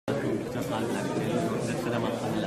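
Speech: a man talking, with a chatter of other voices in the background.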